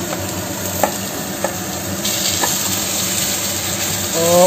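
Onion rings sizzling in a hot stainless steel frying pan as potato slices are scraped in from a bowl and stirred with a slotted spatula, with a few light knocks of the spatula on the pan. The sizzle grows louder about halfway through.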